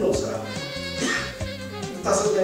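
A man's voice with rising and falling, drawn-out pitch, over background music with held steady notes.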